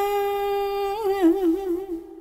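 A voice in Vietnamese ngâm thơ verse chanting holds out the last syllable of a line as one long steady note. About a second in it breaks into a wavering ornament, then fades away at the end.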